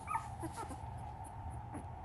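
A newborn standard poodle puppy gives a couple of brief, high whimpers in the first half-second, over a faint steady hum.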